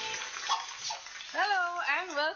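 Brief audience applause as the music stops, then a woman's voice starts speaking about one and a half seconds in.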